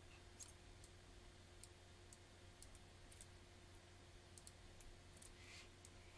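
Near silence with over a dozen faint, irregularly spaced computer mouse clicks over a low steady hum.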